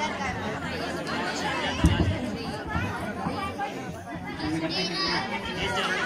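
Many voices chattering over one another, with a single short knock about two seconds in.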